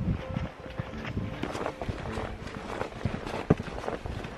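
A hiker's footsteps on a dry dirt forest trail strewn with fallen pine needles and leaves: an irregular run of steps with rustling.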